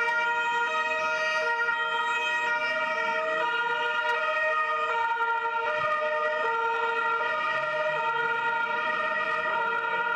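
Vehicle horns sounding continuously in two steady, unwavering tones, held without a break.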